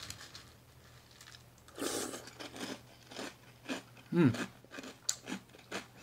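A person biting into and chewing a mouthful of crunchy Kellogg's Unicorn cereal: a loud crunch about two seconds in, then a run of short, crisp chewing crunches.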